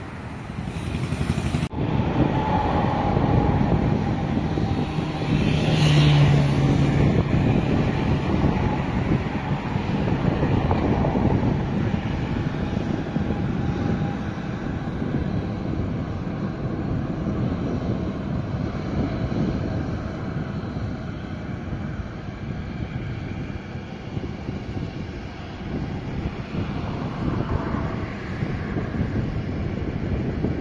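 City traffic at night as picked up by a smartphone's microphone: steady road noise of cars and buses moving past. The sound changes suddenly about two seconds in.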